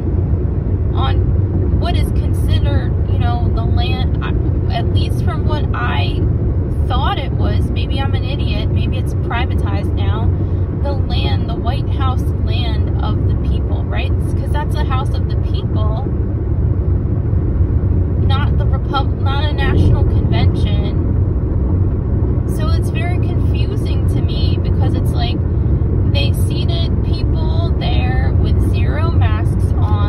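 Steady road and engine noise inside a Hyundai's cabin while driving, a low rumble with a voice talking over it for most of the time.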